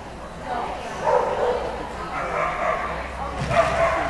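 A dog barking a few times, over people's voices.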